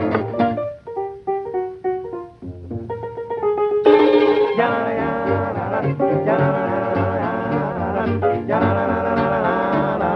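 1940s swing vocal-group recording: a sparse break of single plucked string notes, then the fuller band with a steady bass pulse comes back in about four seconds in.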